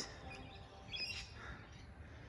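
Faint open-air background with a few brief, high bird chirps.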